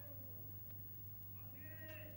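Faint room tone with a steady low electrical hum, and about one and a half seconds in a brief, faint high-pitched call lasting about half a second.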